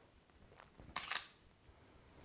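Camera shutter firing once about a second in, with a faint click just before it. It is taking one frame of a macro focus-stacking series.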